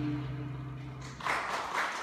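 A jazz combo's closing held chord fades out, and audience applause starts about a second in.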